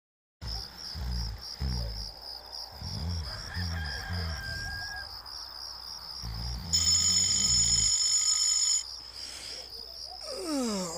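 Sound-effect wake-up scene: a person snoring in slow, repeated breaths under a high, steady chirping of birds. Near the end, a loud held tone lasts about two seconds.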